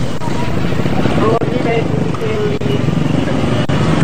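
Motorcycles running along a road, a steady noisy rumble with people's voices in the background.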